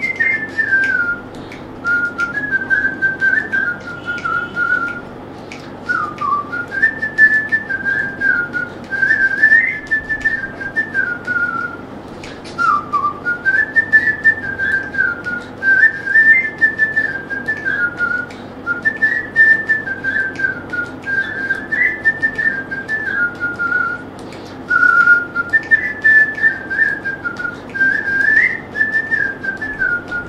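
A person whistling a song melody in a clear, flute-like tone, in phrases of a few seconds with short pauses for breath between them, over a faint steady hum.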